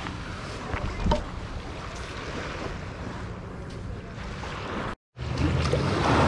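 Steady wind noise on the microphone with a low hum under it, one sharp click about a second in, and a brief dead-silent dropout shortly before the end.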